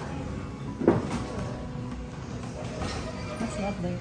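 A single sharp knock about a second in, over low background chatter.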